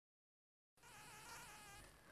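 Near silence: dead air, then from under a second in a very faint hiss with a faint wavering tone.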